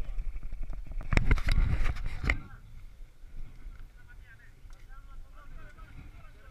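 A loud burst of rumbling and knocking noise for the first two seconds or so, then a quieter background of motocross bikes' engines running with people talking.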